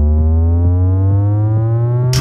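Electronic test-tone frequency sweep: a steady tone climbing slowly in pitch, with several higher tones rising along with it.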